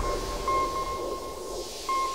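Electronic logo sting of a broadcaster's ident: a steady high beep-like tone that restarts twice, over a soft hiss.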